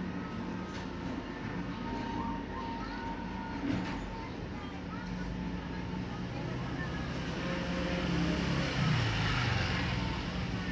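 Steady low background hum and noise with faint distant voices, a single short knock a bit under four seconds in, and the noise growing louder near the end.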